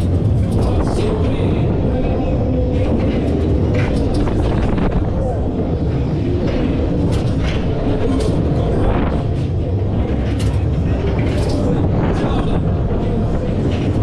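Technical Park Street Fighter pendulum ride in full swing, recorded on board: a loud, steady rumble of wind and machinery as the gondolas swing and spin, with voices and fairground music mixed in.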